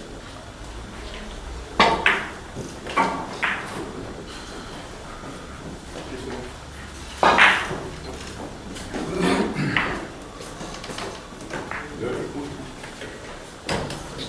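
A handful of sharp clacks and knocks at uneven intervals, the loudest about seven seconds in, over low background voices in the room.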